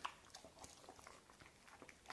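Faint, scattered mouth clicks and smacks of an Akbash puppy chewing food, in near silence.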